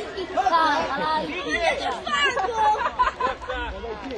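Overlapping chatter of several voices talking and calling out at once.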